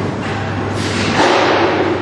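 Bowling alley: a ball strikes the pins with a thudding clatter a little under a second in, over the alley's steady hum.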